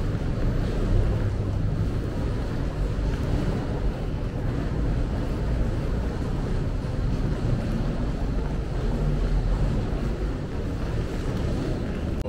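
Steady low rumble of wind and handling noise on a handheld camera's microphone as it is carried along, with no distinct events.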